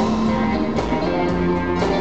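Live blues band: electric guitar playing over the band's drums, loud and continuous.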